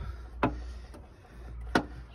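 Two sharp clicks about a second and a half apart, from a rubber heater hose and its metal worm-drive hose clamp being handled and worked off a pipe, over a low steady hum.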